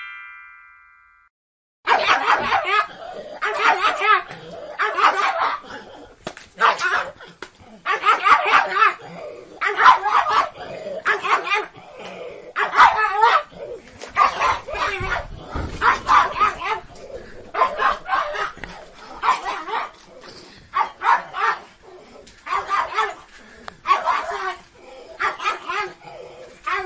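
A short rising chime fades out at the start. Then, after a moment's silence, a pug barks over and over, in loud bursts about once a second.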